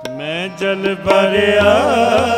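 Sikh kirtan: a man starts singing with an upward-sliding held note, over a harmonium drone and sparse tabla strokes. The singing swells louder about a second in.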